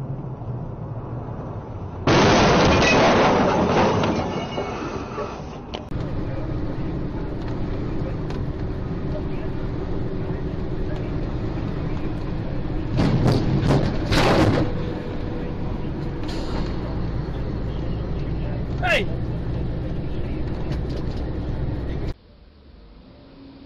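A steady vehicle drone, with a loud rushing noise starting about two seconds in and lasting some three seconds, then a cluster of sharp knocks a little past the middle.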